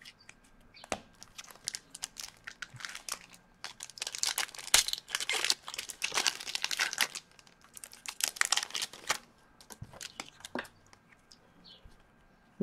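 Hockey trading-card packs and cards handled: foil pack wrappers crinkling and tearing, and cards rustling as they are shuffled, in a run of short, irregular rustles that are busiest in the middle.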